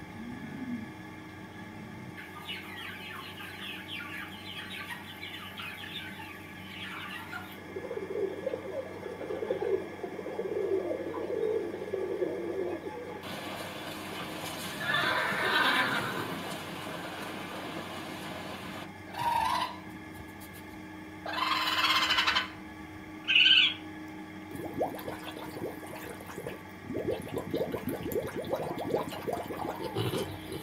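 Assorted animal calls one after another, changing every few seconds, with three short loud calls in the second half.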